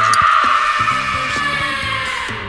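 A long, high-pitched scream, dropping slightly in pitch and fading near the end, over background music with a steady beat.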